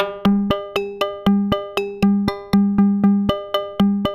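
Percussive synthesizer sequence from a Harvestman Piston Honda Mk II wavetable oscillator gated through a Make Noise Optomix: short pitched electronic hits, about four a second, each dying away quickly. The hits fall on a mix of a lower and a higher note.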